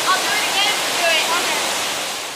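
A waterfall pouring into the deep pool beneath it, a steady, even rush of water.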